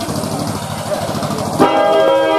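Stage sound through a PA: a rough, noisy stretch with no clear tune. About a second and a half in, a harmonium chord comes in with steady held tones as the accompaniment starts up again.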